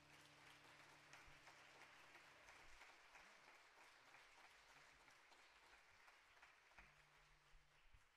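Faint applause from a congregation, an even patter of many hands clapping that slowly tapers off. A low held tone underneath dies away about three seconds in.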